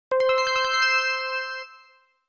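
Short bell-like intro chime: a quick run of bright struck notes over one held ringing tone, fading away about a second and a half in.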